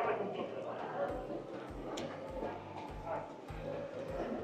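Busy airport terminal hall: a murmur of voices, with footsteps clicking on a polished stone floor and low thumps about twice a second from walking.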